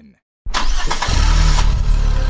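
A car engine starts suddenly about half a second in, after a moment of silence, then keeps running loud and steady with a deep note.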